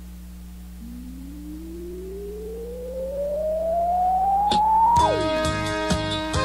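A single electronic tone sweeping slowly upward for about four seconds over a faint low hum. The full band then crashes back in about five seconds in, as the tone drops away.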